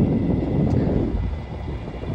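Wind buffeting the microphone, a heavy rumbling noise that eases off after about a second.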